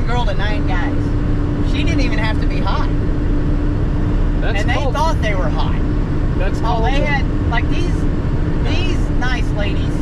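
Semi truck's diesel engine and road noise droning steadily inside the cab at highway speed, with a steady hum joining about half a second in and a voice heard over it.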